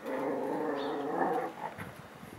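Dog growling: one long, steady growl lasting about a second and a half, then stopping.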